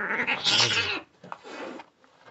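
Kitten crying out while play-fighting with another kitten: a loud yowl in the first second, then a shorter, quieter cry about a second and a half in.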